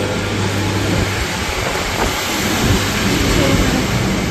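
Steady outdoor rushing noise, with a low hum that fades out about a second in.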